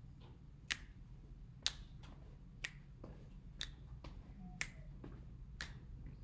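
Faint sharp clicks, one about every second and evenly spaced, over a low steady room hum.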